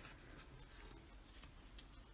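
Faint papery rustle of a planner page being turned over, very quiet against the room tone.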